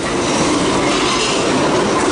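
A roomful of people sitting back down at meeting tables: chairs scraping and shuffling on the floor, a steady dense clatter and rumble.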